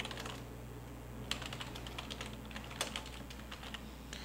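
Computer keyboard typing: a run of quick key clicks at an uneven pace, over a faint steady low hum.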